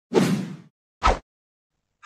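Edited intro sound effects: a whoosh lasting about half a second, then a short, sharp whack about a second in.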